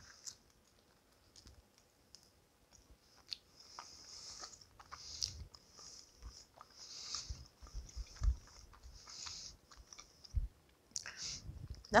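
A person chewing a mouthful of soft, chewy homemade bagel: faint, intermittent chewing and mouth sounds that become steadier after a few seconds.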